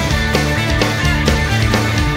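Rock band playing live, an instrumental passage with no singing: full band with drums keeping a steady beat of about four hits a second.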